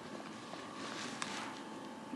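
Electric foot massager running with feet inside it: a faint, steady motor hum, with one light click about a second in.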